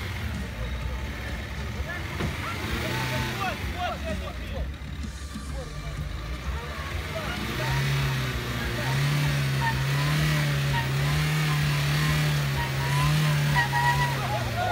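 Suzuki Jimny's engine running while stuck in mud, revving up and down about once a second from halfway through, over a crowd's chatter.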